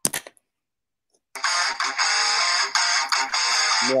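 Guitar-driven intro music starts suddenly about a second in and runs on loud and dense. A brief short sound comes just before it at the very start.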